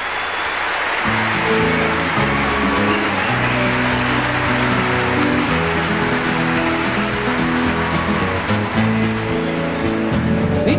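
Audience applause, with an orchestra coming in under it about a second in, playing slow sustained chords as the introduction to a song.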